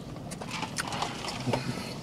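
Close-up mouth sounds of two people eating burritos: wet smacking and chewing, with fingers being licked, heard as a run of irregular short smacks and clicks.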